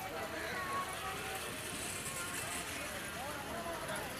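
Indistinct chatter of several people at once with general market bustle, a steady background murmur with no single clear speaker.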